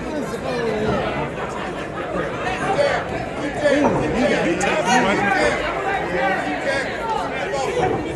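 Boxing crowd chatter: many overlapping voices of spectators talking and calling out at once.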